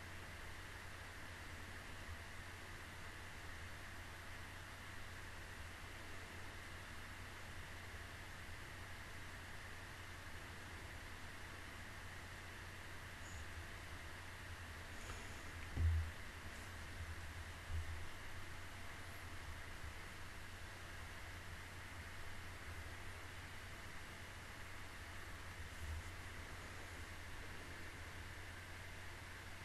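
Faint steady hum and hiss of a desk microphone's background noise, with one dull low thump about halfway through and two softer ones later.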